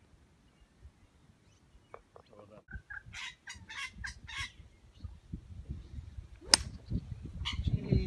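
A golf club striking the ball off the tee: one sharp crack about six and a half seconds in. Before it, a short run of bird-like calls is heard a couple of times in quick succession.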